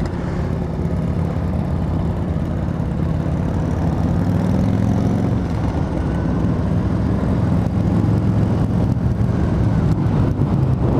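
Yamaha FJR1300 sport-touring motorcycle cruising at a slow, steady group-ride pace: a continuous low engine drone with road and wind noise on the bike-mounted microphone. The engine note grows slightly stronger partway through.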